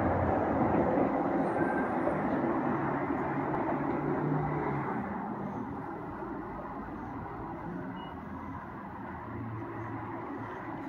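Passing road traffic: a steady vehicle rumble, loudest in the first few seconds and fading after about five seconds.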